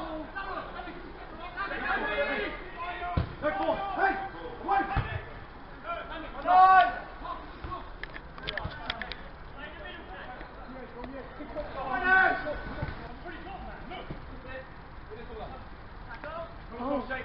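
Voices of players and spectators at a football match: scattered calls and chatter, with a loud shout just under halfway through and another, less loud, about three-quarters of the way in. A couple of short sharp thuds come in the first third.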